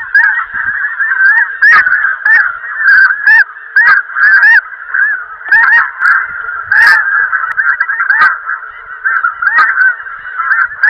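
A large flock of geese honking overhead: a dense, continuous chorus of many overlapping calls, with a few louder honks standing out near individual birds.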